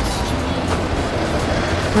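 Background music over a bus engine running steadily.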